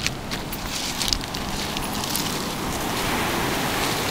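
Footsteps crunching over beach pebbles, a few irregular crunches over a steady rush of wind and surf.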